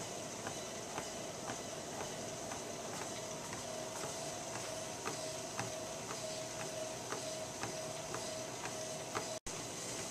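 Life Fitness treadmill running with a steady motor whine, and light footfalls on the moving belt about twice a second as a person walks at a slow pace. The sound cuts out for an instant near the end.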